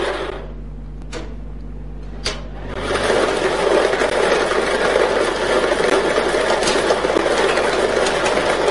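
Lottery ball draw machine starting up about three seconds in, its mixing chamber churning the numbered balls with a steady clattering noise. Before that there is a low hum and two light clicks.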